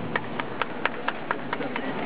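Footsteps of a handler and a dog trotting around a show ring: a run of sharp, short taps, about four a second, slightly uneven.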